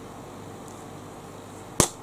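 Quiet room hiss, then a single sharp click near the end.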